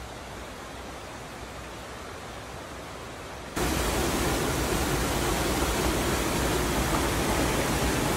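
Rushing water of a river and waterfalls, a steady noise that jumps abruptly louder a little under halfway through.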